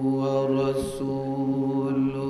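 A man chanting Arabic praise in long, drawn-out melodic notes, amplified through microphones, with a brief hiss of a consonant about a second in.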